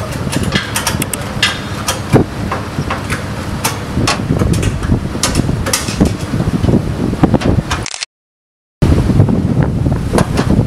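Wind buffeting the microphone, with frequent short metallic clinks and knocks of gas cylinders being handled in their racks. The sound cuts out completely for under a second about eight seconds in.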